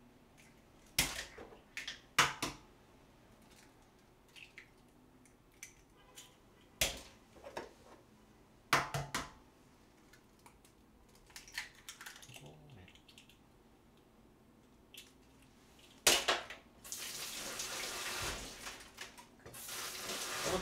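Eggs cracked one at a time on the rim of a small earthenware bowl: a few sharp taps spread out with quiet between them, the shells breaking and the eggs dropping into the bowl. Near the end, water runs steadily for a few seconds, as from a kitchen tap.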